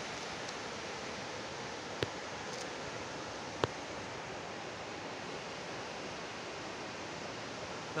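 Steady rushing of a rocky mountain river running over boulders, with two brief clicks about two and three and a half seconds in.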